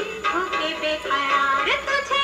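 A 1972 Hindi film song playing: a woman's voice singing a wavering, ornamented melody in short phrases over instrumental accompaniment.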